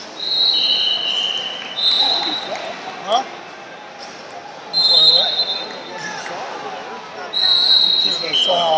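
Referee whistles blowing short blasts, about five in all, each under a second and at slightly different high pitches, over background chatter in a large hall.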